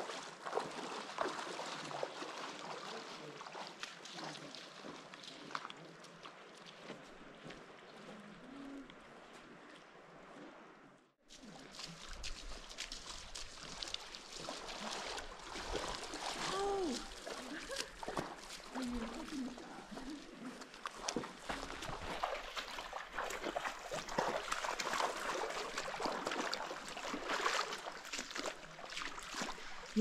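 Hikers' footsteps splashing and sloshing through a shallow river over the steady rush of flowing water, with brief voices. The sound cuts out for a moment about a third of the way in.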